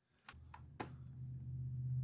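A low steady hum fades in about a third of a second in and grows louder, with a few faint clicks in its first second.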